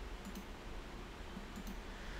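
Computer mouse button clicks, two quick pairs about a second apart, over a faint low hum.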